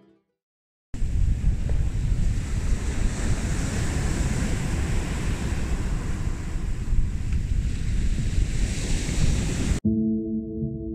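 Sea surf washing onto a beach, with strong wind buffeting the microphone in a heavy low rumble. It starts abruptly about a second in and cuts off suddenly just before the end.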